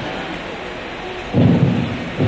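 Steady, noisy rumble of a busy hall picked up by a phone microphone. A loud voice cuts in about a second and a half in.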